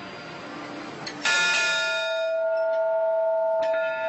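A bell struck once about a second in, its tone ringing on and fading slowly.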